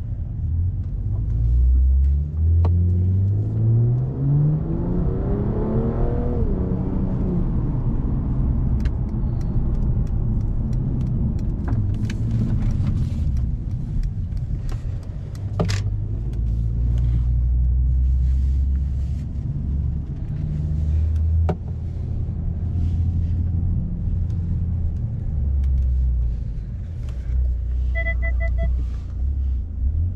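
Brabus-tuned Mercedes-Benz CLS heard from inside the cabin. The engine note climbs steadily for several seconds under acceleration, drops at a gear change, then settles into a low rumble while cruising. A few sharp clicks break in, and near the end comes a quick run of electronic beeps.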